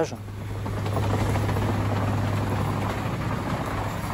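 Military transport aircraft's propeller engines droning, heard from inside the cargo hold with the rear ramp open: a steady low hum under a broad rush of air, swelling about a second in and easing off near the end.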